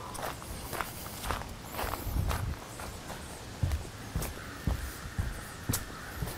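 Footsteps on a gravel, rock-based trail, an uneven walking rhythm with a few louder thuds in the second half.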